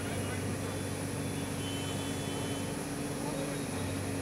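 Backhoe loader's diesel engine idling with a steady low hum, over street background noise.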